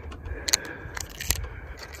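Homemade golf-swing 'clicker' training aid, a small taped tube held in the hand, giving a few sharp clicks as it is tilted and moved.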